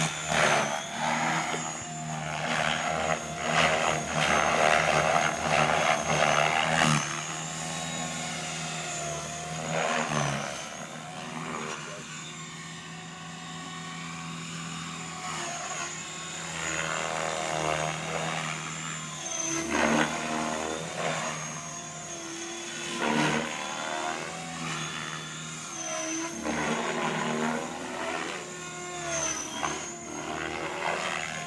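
Blade 550X electric RC helicopter flying aerobatics: a steady high motor whine over the rotor blades' whooshing beat. The sound swells and fades repeatedly, loudest in the first several seconds and in short surges later, as the helicopter swoops and passes.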